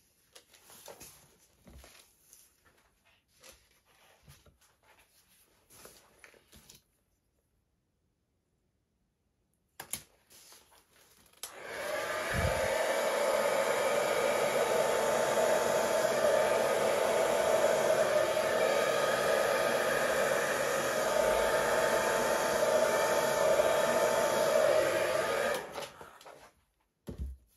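Handheld hair dryer switched on about twelve seconds in and running steadily at close range, blowing paint outward across a canvas, then switched off just before the end. Before it come faint small handling sounds and a few seconds of dead silence.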